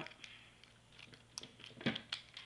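Small plastic headphone earpiece casing being broken and worked apart by hand to pop the magnet out: a few faint scattered clicks and cracks, with a sharper click just before the end.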